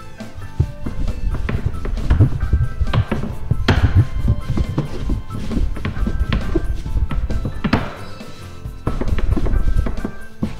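Long wooden rolling pin rolling out a stiff dough on a floured wooden board, giving irregular low knocks and thuds, over background music.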